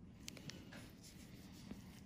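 Faint scratchy rubbing with a few light clicks: a cotton pad being moved over skin during a blackhead extraction.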